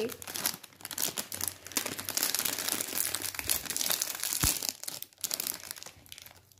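Plastic snack packet crinkling and crackling as it is handled and torn open. The rustle runs about five seconds and dies away near the end.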